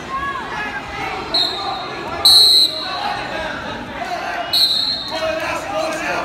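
Referee's whistle blown in three short, steady high blasts, the loudest about two seconds in, over shouting voices echoing in a gym.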